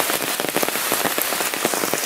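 Rain falling steadily on a field of broad leafy plants. Individual drops strike the leaves as a dense, irregular run of small ticks over a steady hiss.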